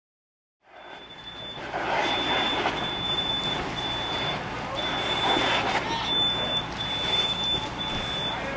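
A vehicle engine running steadily, with a high-pitched electronic beeping tone that sounds again and again in stretches of about half a second to a second. The sound comes in about a second in.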